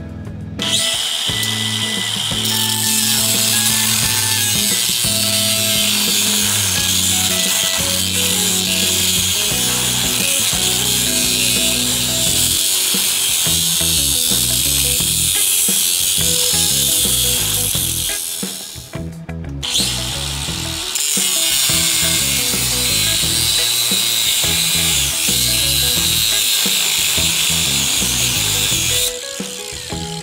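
Angle grinder with a cutoff disc cutting into a metal winch hook: a loud, high grinding hiss that runs for about eighteen seconds, stops for about two seconds, then cuts again until about a second before the end.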